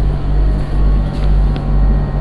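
Steady, loud low hum and rumble of background room noise, with two faint ticks in the second half.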